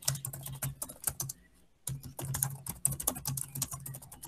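Typing on a computer keyboard: quick runs of keystrokes with a short pause of about half a second a little after the first second.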